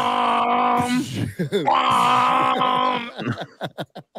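A man laughing hard in two long, held, wailing breaths with falling squeals between them, tailing off near the end.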